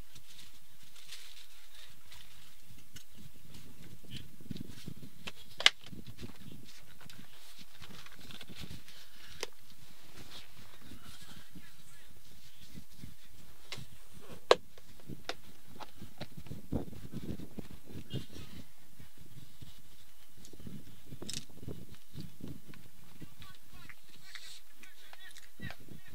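Faint, distant voices of cricket players calling to one another across an open field. Two sharp, loud knocks stand out, about nine seconds apart.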